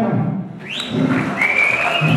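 A shrill whistle from the crowd: a quick swoop up, then a long held note that steps slightly higher, over general crowd noise.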